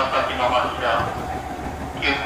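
Interior running noise of a Sotetsu 7000 series train (set 7710F): a steady low rumble of wheels on rail, with an onboard announcement voice over it that fades out about halfway through.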